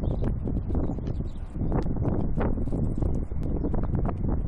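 Wind buffeting the microphone: a steady, gusting low rumble, with scattered faint clicks above it.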